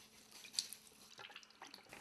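Faint, scattered drips and small splashes of water as a wet paint roller sleeve is squeezed out.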